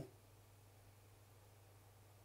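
Near silence: room tone with a faint, low, steady hum.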